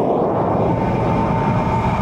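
Loud, steady rushing noise with a thin steady tone riding on top, from a film soundtrack during a gunfight scene.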